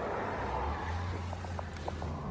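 Car engine idling, a steady low hum heard from inside the cabin, with a few faint light clicks about halfway through.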